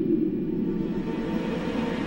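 Low, steady rumbling drone with a faint held tone above it, the soundtrack's underwater ambience.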